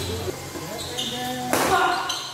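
A badminton racket strikes the shuttlecock once, a sharp hit about one and a half seconds in that rings briefly in the hall. Shoes squeak on the court floor just before it.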